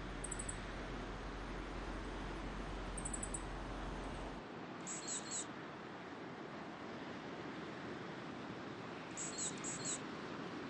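High, thin songbird calls over a steady outdoor hiss: two brief rapid high trills in the first few seconds, then after a change in the background, groups of three short high calls about five seconds in and again near the end.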